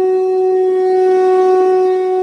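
Conch shell (shankh) blown in one long, steady, loud held note.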